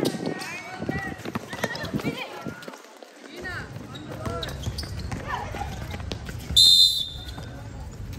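A referee's whistle gives one short, shrill blast near the end, stopping play for a foul, over players' shouts and a basketball bouncing on the hard court.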